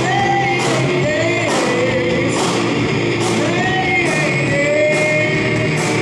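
Live rock band: electric guitar and drum kit with cymbal crashes, and a voice singing about four long notes that slide up and down in pitch.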